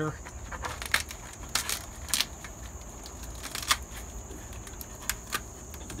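Scattered dry clicks and crackles, a dozen or so at irregular spacing, over a steady high-pitched insect drone.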